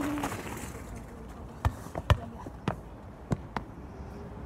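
A short run of sharp knocks at uneven intervals, about six in all, starting a little past the middle, the loudest about halfway through.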